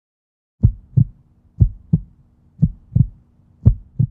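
Heartbeat sound effect: four double thumps, lub-dub, about a second apart, over a faint steady low hum.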